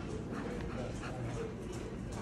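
A dog giving a few short, quiet whines over steady low background noise.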